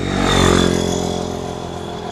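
A carbureted Suzuki Raider 150 underbone motorcycle passing close by. It is loudest about half a second in and then fades as it moves away, and a high whine drops in pitch as it goes past.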